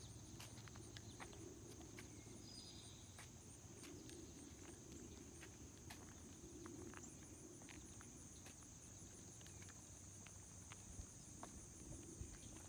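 Near silence: a faint, steady, high-pitched insect chorus, likely crickets, with a few light clicks scattered through it.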